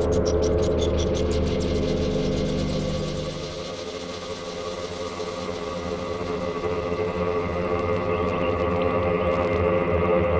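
Make Noise Eurorack modular synthesizer patch playing a sustained drone of layered tones, with a quick run of high ticks in the first couple of seconds. About three and a half seconds in the low bass drops out and the sound thins, then slowly swells back.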